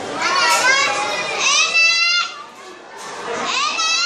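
Young children calling out and talking over one another, their voices high-pitched, with one long held high call about a second and a half in.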